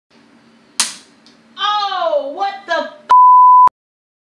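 A sharp knock, a short exclamation in a falling voice, then a steady high-pitched beep of just over half a second that starts and stops abruptly, the kind of tone used to bleep out a word.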